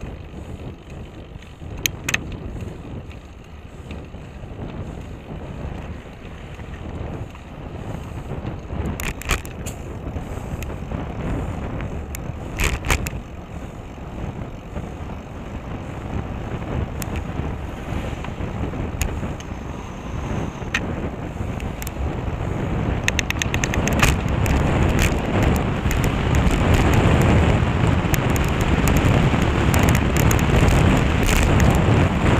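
Wind rushing over the microphone of a camera on a moving bicycle, mixed with tyre and road noise, growing louder over the last several seconds. A few sharp clicks break through, including a quick run of them near the end.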